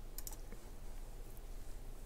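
A couple of faint computer mouse clicks about a quarter second in, selecting a menu item, over a low steady hum.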